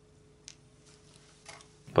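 Small metal wire connectors being handled and pushed together by hand: one brief click about a quarter of the way in and a few faint clicks near the end.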